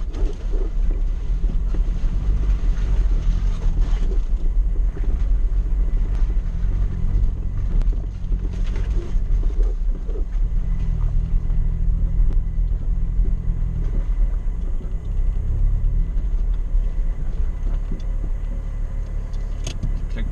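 Suzuki 4x4's engine running at low speed on a rough off-road track, heard from inside the cabin as a steady low drone and rumble. The engine note eases off briefly about eight seconds in, then picks up again.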